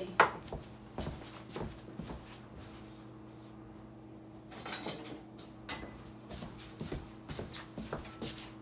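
Kitchen handling noises: scattered clicks and knocks of jars and utensils, a sharp knock just after the start and a longer rattling clatter about five seconds in. Under them runs a steady low hum.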